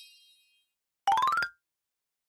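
Video-editing sound effects: the fading tail of a bright chime, then, about a second in, a short rising 'boing'-like glide with a buzzy, pulsing texture that lasts about half a second.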